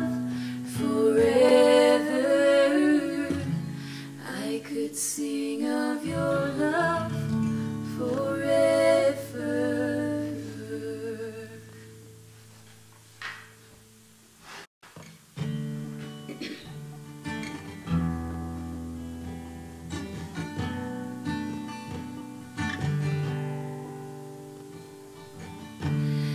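Acoustic guitar accompanying two women singing a slow worship song in harmony. The singing stops after about ten seconds and the music almost dies away around the middle. The guitar then carries on alone with picked notes before the voices come back in near the end.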